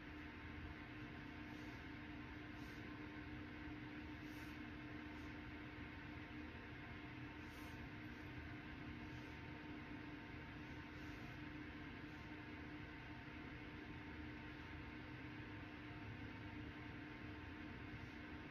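Quiet room tone: a steady low hum under a faint even hiss, with a few faint soft swishes now and then.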